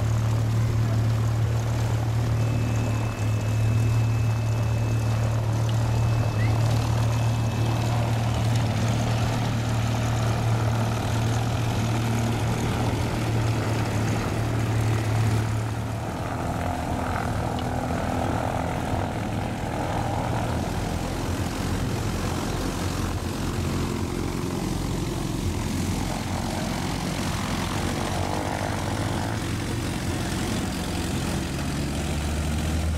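Propeller airplane engine drone, steady and strong as the plane flies in toward the microphone. About sixteen seconds in, this gives way to a lighter, lower-power engine note from a Mooney single-engine plane taxiing.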